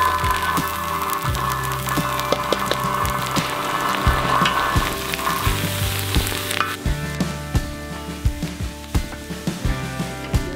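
Butter, onions, bell peppers and jalapeños sizzling hard on a hot steel disc cooker, with a wooden spatula clicking and scraping on the metal as they are stirred. The sizzle drops off sharply about two-thirds of the way in, leaving a quieter frying with the spatula clicks.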